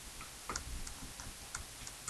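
Faint, irregular light taps and clicks of a stylus on a writing surface as a row of numbers and dots is written, about two or three taps a second.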